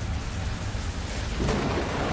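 A steady hiss over a low rumble, swelling louder about one and a half seconds in.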